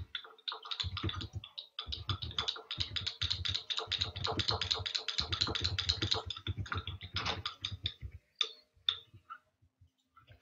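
A plastic spatula stirring blue pigment into melted clear soap base in a small heat-resistant glass beaker, clicking rapidly against the glass, several clicks a second. The stirring stops about eight seconds in, with a few scattered clicks after.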